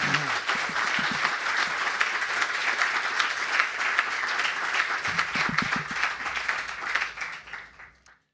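Audience applauding, with a few voices under the clapping; the applause fades near the end and the recording cuts off.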